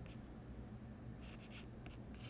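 Stylus writing on a drawing tablet: a few faint, short scratchy strokes as the figures are written.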